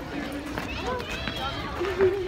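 Indistinct voices of people around, with footsteps on pavement.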